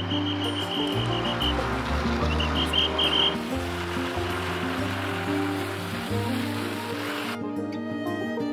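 Background music with sustained low notes, over a steady rushing hiss that cuts off suddenly near the end; a run of short high chirps sounds in the first three seconds.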